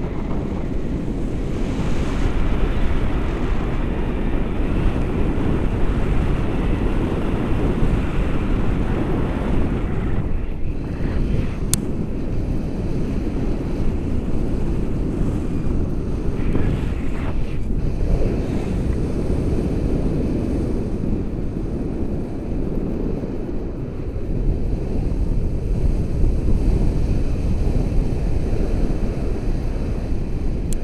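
Airflow of a tandem paraglider in flight buffeting the action camera's microphone: steady, loud wind noise, a deep rumble that barely lets up.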